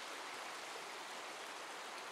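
Shallow, rocky river running steadily over and between stones: an even, unbroken rush of water.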